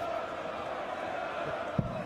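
A single steel-tip dart thuds into a bristle dartboard near the end, a short sharp knock over a steady murmur of arena crowd.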